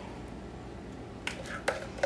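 A few light clicks and taps of a measuring cup against a metal muffin tin as batter is portioned into the cups, over a faint room hum. The clicks come in the second half.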